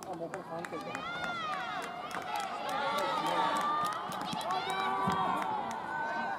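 Several voices shouting and calling out at once across the ballfield, overlapping, with scattered sharp clicks.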